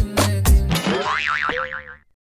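Background music with a heavy, regular beat that stops a little under a second in, followed by a wobbling cartoon 'boing' sound effect that fades out.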